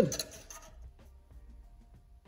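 A man's voice trails off at the start, then quiet room tone with a few faint light clicks as a steel ruler and marker are handled against a steel plate.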